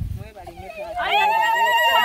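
High-pitched celebratory ululation from the crowd, starting about a second in after brief talk and held as a long wavering trill.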